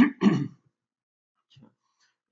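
A man clearing his throat: two short rasps in quick succession.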